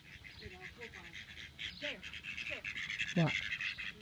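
A herding dog panting fast and hard while working.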